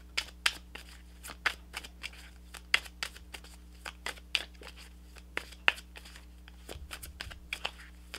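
A deck of tarot cards being shuffled by hand: irregular crisp clicks and slaps of cards dropping against one another, a few a second, with a quicker flurry near the end.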